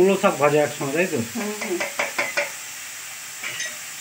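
Chopped spinach sizzling in a hot wok as a metal spatula stirs it, with a steady frying hiss. A voice talks over the first half, and the sizzle carries on alone after that.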